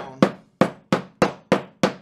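Plastic-faced fret mallet tapping fret wire down into the slots of a wooden fretboard: a steady run of sharp taps, about three a second.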